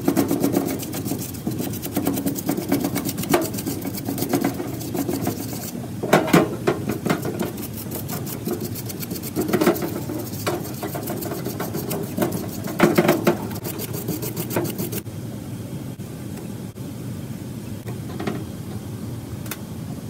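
A stiff-bristle parts-washer brush scrubbing a carburetor body in fast strokes, with cleaning fluid running through the brush and splashing off the metal. The scrubbing stops about three-quarters of the way in, leaving a quieter wash.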